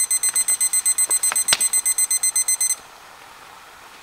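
Digital cooking thermometer's temperature alarm beeping rapidly, a high electronic beep several times a second, which signals that the water has reached 212°F, the boil. There is a single click partway through, and the beeping stops about two-thirds of the way in.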